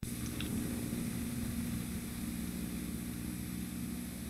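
Steady low hum with hiss from a VHS videotape starting to play back, beginning suddenly, with a couple of faint ticks about half a second in.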